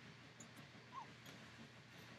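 Near silence with one faint, brief squeak about a second in: a baby's small coo.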